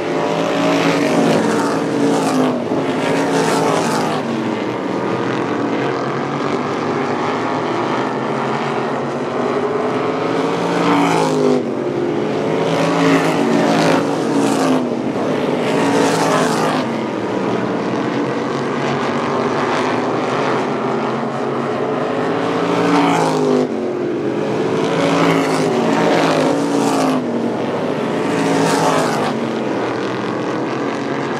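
Several winged open-wheel short-track race cars lapping, their engines revving up and down through the corners, with the sound swelling each time the pack or a single car passes close, several times over.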